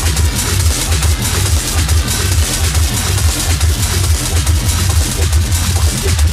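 Techno DJ mix with a steady four-on-the-floor kick drum, about two beats a second, under continuous hissing hi-hats and synth layers.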